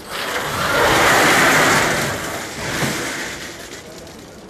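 A vehicle passing: a rush of noise that swells over the first second, stays loudest for about a second, then fades away toward the end.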